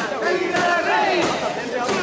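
Mikoshi bearers shouting their carrying chant together, many men's voices overlapping loudly as they shoulder the portable shrine.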